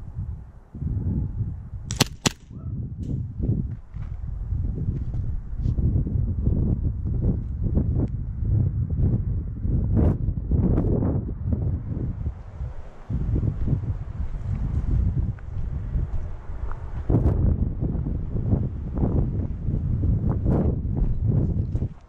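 Footsteps on dirt and a jostling rumble of movement close to a body-worn camera microphone. About two seconds in come two sharp airsoft pistol shots in quick succession.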